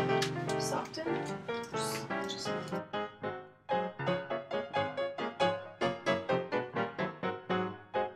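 Silent-film-style background piano music, quick notes struck at an even rhythm of about four a second.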